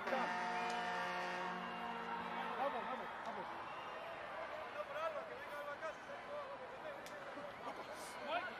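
Stadium time-up hooter: one steady, low horn note lasting about two and a half seconds, sounding as the game clock runs out. Crowd noise with faint voices follows.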